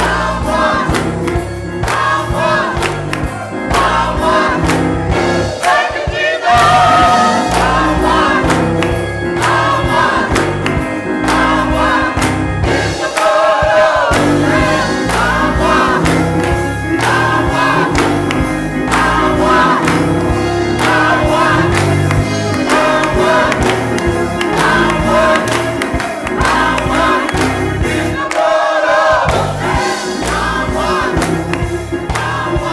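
A gospel choir singing an upbeat song with hand clapping, over a band accompaniment with a pulsing bass line.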